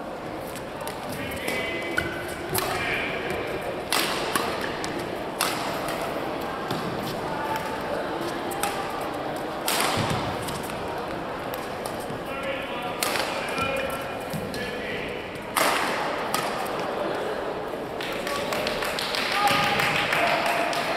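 Badminton rackets striking a shuttlecock in a doubles rally: a series of sharp cracks at irregular gaps of one to a few seconds, ringing in a large hall.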